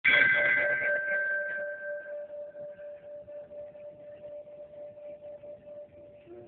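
Large hanging brass temple bell struck once, ringing out and dying away slowly; the higher notes fade within about two seconds while a lower hum lingers, wavering in loudness.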